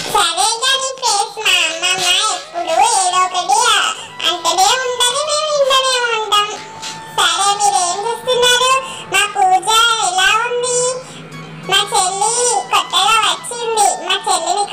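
A very high-pitched, child-like voice singing, with music.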